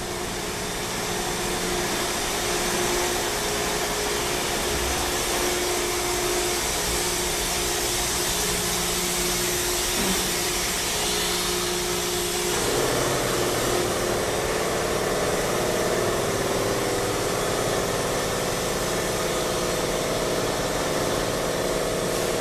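Loud, steady machinery noise: a broad hiss over a low hum, whose pitch changes about halfway through.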